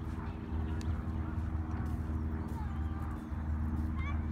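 A steady low droning hum, with faint distant voices.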